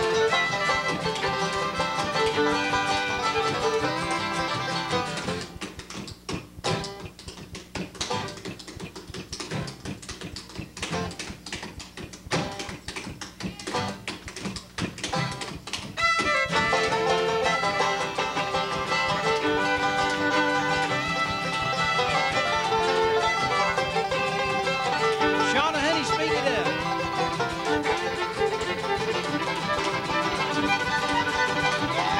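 Bluegrass band of fiddle, banjo, guitar, mandolin and upright bass playing an uptempo tune. About five seconds in, the band drops out and a dancer's rapid clogging foot taps on the stage floor are heard alone for about ten seconds. The full band then comes back in suddenly.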